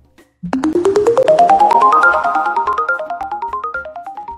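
Closing music: a quick run of short, distinct notes climbing step by step in pitch, about ten a second. It repeats its upward run and slowly fades.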